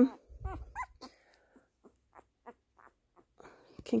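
Young labradoodle puppy complaining at being held on its back: a short whine with a low undertone about half a second in, then a series of faint, brief squeaks.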